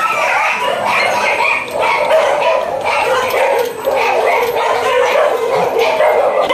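A large group of shelter dogs barking together without pause, many barks overlapping into one continuous noisy chorus. They are raising the alarm at a stranger.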